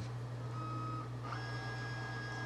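Brother multifunction printer's scanner running a scan: a faint, steady motor whine that steps up to a higher tone a little over a second in.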